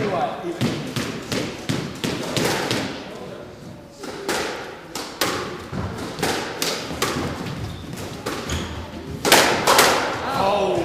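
Squash rally: a quick, irregular run of sharp knocks as the ball is struck by the rackets and hits the court walls and floor, two or three a second. A louder burst comes about nine seconds in.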